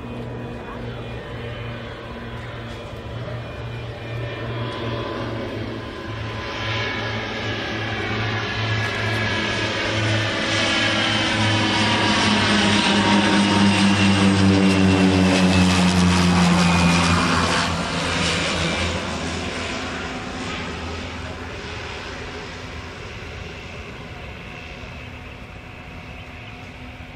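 de Havilland Canada DHC-6 Twin Otter's twin PT6A turboprops passing low overhead on approach. The propeller drone builds steadily to a peak past the middle, then drops in pitch as the plane goes by and fades away.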